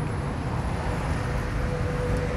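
Steady low rumble of road traffic, with a faint steady hum running through it.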